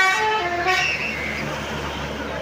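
A tour bus's basuri musical air horn playing a tune of stepped notes that ends just under a second in, followed by the bus's engine running and road noise as it passes.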